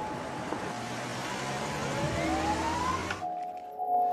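Street sound of a prison van arriving: a steady traffic hiss with one rising siren-like wail about two seconds in. The street sound cuts off suddenly after about three seconds, leaving a held music chord.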